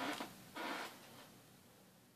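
Handling noise as the plastic quadcopter is moved and set down on the workbench: two short scraping rustles about half a second apart, with no motor sound.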